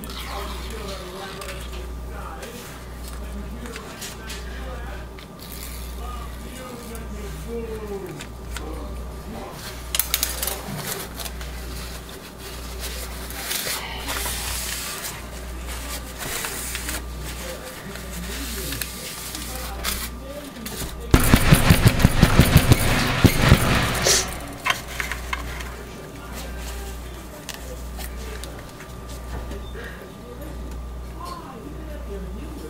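A burst of rapid knocking, about ten knocks a second for some three seconds past the middle and the loudest sound here, over a steady low hum.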